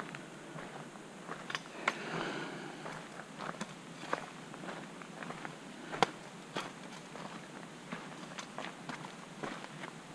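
A hiker's footsteps on a dirt forest trail, irregular steps about one or two a second, with a brief rustle about two seconds in and one sharper step about six seconds in.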